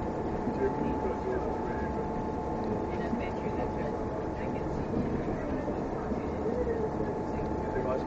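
Steady running noise of a moving bus heard from inside the cabin: a low engine and road rumble with a constant thin tone running through it, and people talking in the background.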